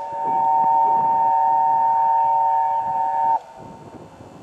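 Steam locomotive whistle of the Peppercorn A1 Tornado, one long steady blast sounding several notes together, cutting off suddenly about three and a half seconds in. A faint low rumble follows.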